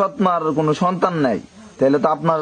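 Speech only: a person talking, with a brief pause about a second and a half in before the talking resumes.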